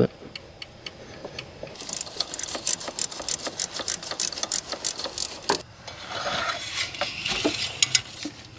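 A rapid run of light metallic clicks and ticks, about five a second, then one sharper click about five and a half seconds in, as the steel dipstick tube is worked back down into its bore in the engine block.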